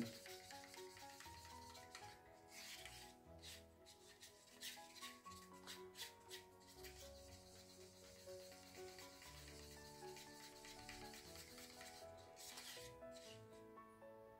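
Faint, repeated scraping of a wooden stir stick against a paper cup as thick acrylic paint is stirred, over soft background music.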